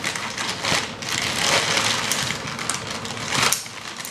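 Scissors cutting into a plastic mailer bag and the plastic crinkling and rustling as it is torn open and handled, with a sharp click about three and a half seconds in.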